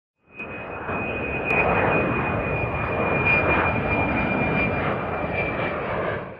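Jet airplane noise: a steady rushing roar with a high whine held over it, rising in just after the start and easing off near the end.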